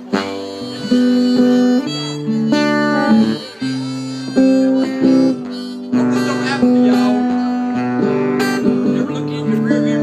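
Harmonica playing a melody of held notes over strummed acoustic guitar, an instrumental break between verses of a country song.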